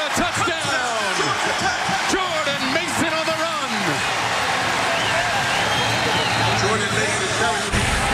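Football stadium crowd cheering a home-team touchdown, with music playing over the noise.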